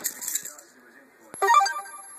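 A brief electronic jingle: a click, then a quick run of several short beeping notes, about a second and a half in.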